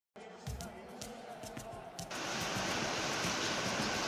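Steady hiss of rain that comes in suddenly about two seconds in, after a quieter stretch with a few soft knocks.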